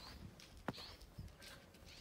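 Faint footsteps on snow-covered ground: a few scattered soft steps, with one sharp tick a little past halfway.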